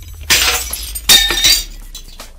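Glass-shatter sound effect in a channel logo intro: two sudden crashing bursts about a second apart, the second ringing briefly, over a low steady drone.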